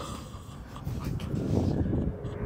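Low, uneven rumble as the blast of an exploding target in a plastic bottle, set off by an air rifle shot, echoes and dies away over open ground.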